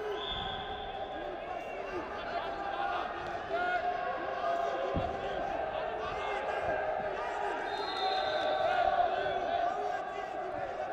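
Voices shouting in short calls in a large arena hall during a Greco-Roman wrestling bout, over thuds and slaps from the wrestlers hand-fighting on the mat, with one sharp thump about halfway through.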